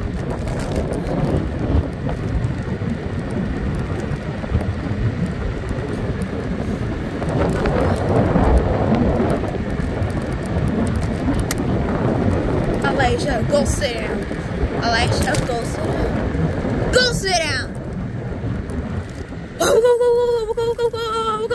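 Steady rumble of wind buffeting the microphone and tyre noise from a Hiboy electric scooter riding along a paved street. Brief voice sounds come in near the end.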